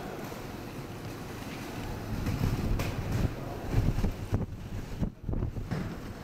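Low, uneven rumbling noise that rises and falls, loudest in the middle seconds: wind buffeting the microphone.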